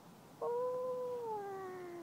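A toddler's long, drawn-out vocal "ooh", starting suddenly about half a second in, holding its pitch and then sliding down.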